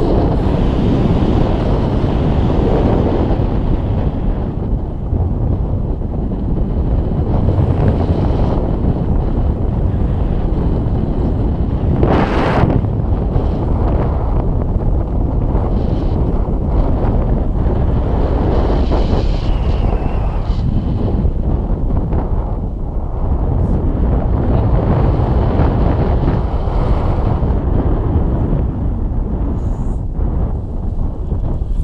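Wind buffeting the action camera's microphone during a paraglider flight: a loud, steady low rumble that rises and falls a little, with one brief sharper burst of noise near the middle.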